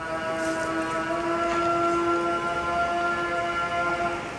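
Muezzin's call to prayer from a minaret loudspeaker: one long held sung note, fading near the end.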